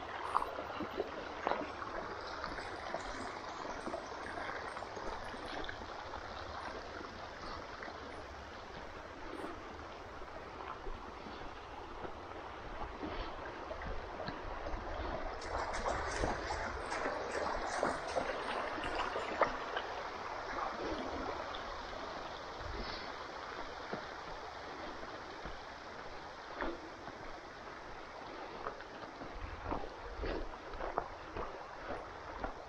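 A shallow creek running, a steady rush of water that swells for a few seconds in the middle, with a low rumble underneath.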